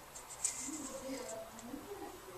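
Quiet handling of paracord with a steel surgical clamp: a few light clicks and rustle near the start. Under it, from about half a second in, a faint low voice hums or mutters with no clear words.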